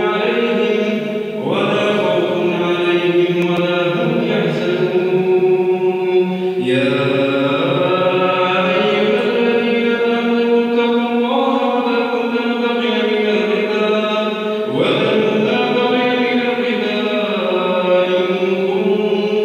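A man's solo voice chanting Quran recitation in prayer, in long, held, melodic phrases; new phrases begin about a second and a half in, near seven seconds, and near fifteen seconds.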